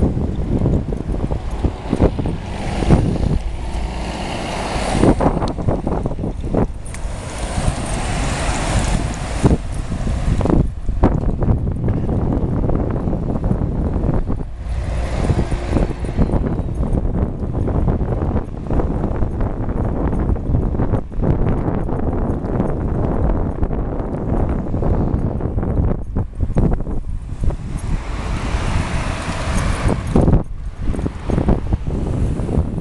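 Wind rumbling on a moving microphone, with road traffic going by. The noise swells several times, a few seconds in, around the eighth to tenth second and again around the fifteenth.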